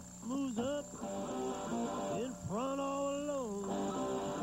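A man singing a blues-rock song over guitar. A few short, bending sung notes come early, then one long held note in the second half that slides up at its start and falls away at its end.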